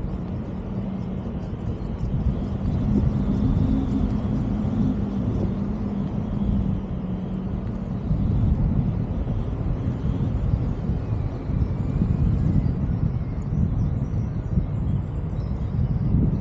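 Wind from the flight buffeting the microphone of a camera carried on a paraglider in flight: a steady low rumble of rushing air, with a faint steady hum under it through the first half.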